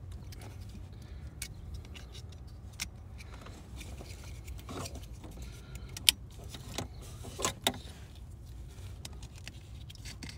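Scattered sharp plastic clicks and taps as a replacement blower motor resistor is handled and fitted into its wiring connector, the loudest click about six seconds in and two more close together soon after, over a low steady hum.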